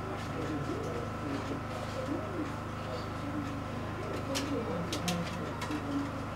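Typing on a laptop keyboard, with a few sharp key clicks between four and five seconds in, over a steady electrical hum and low cooing calls.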